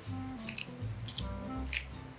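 Wooden pepper mill grinding white pepper in about four short, crisp bursts, over soft background music.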